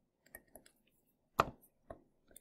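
A few short clicks and taps from a stylus and pen input on a drawing tablet: two faint ticks early on, then two sharper clicks, the loudest about one and a half seconds in.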